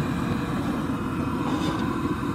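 Coleman Fyreknight Hyperflame portable gas stove burner running with its flame lit: a steady low rushing.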